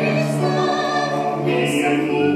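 Music: a theatrical song, a singing voice holding long, wavering notes over instrumental accompaniment.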